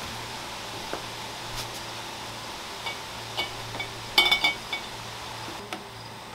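Glass vases and jars clinking and knocking together as flower bouquets are handled and moved, a few light clinks with short ringing tones and a louder cluster of clinks a little past the middle.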